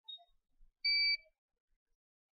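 A single short electronic beep from soldering bench equipment, steady in pitch and about a third of a second long, about a second in, with a faint brief chirp just before it.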